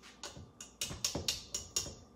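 A wire whisk beating thick batter in a stainless steel bowl, clicking against the metal in quick strokes, about five or six a second.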